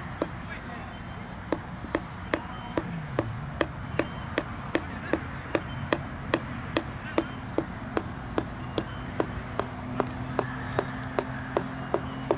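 A regular series of sharp clicks, sparse at first and then steady at about two and a half a second, over a low hum.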